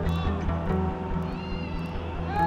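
Background music with a steady bass and a high melodic line that bends in pitch about midway.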